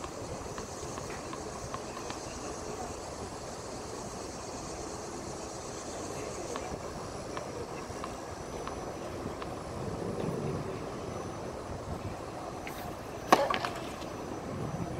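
A tennis racket strikes the ball once on a serve, a single sharp crack near the end, over a steady background rumble. A few faint ticks of the ball bouncing on the hard court come before it.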